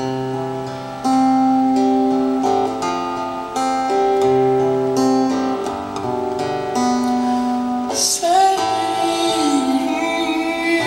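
Solo acoustic guitar played live, picked notes and chords ringing and changing every second or so.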